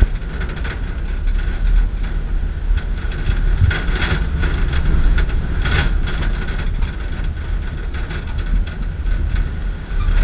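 Wind rushing over the microphone of a rider on a high-spinning Star Flyer swing ride: a heavy low rumble with a faint steady high whine, and short rattling clatters about four and six seconds in.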